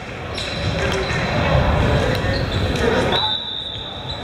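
Players' voices talking and calling out in a large echoing gymnasium, with a few balls bouncing on the hardwood floor. The voices thin out a little after about three seconds.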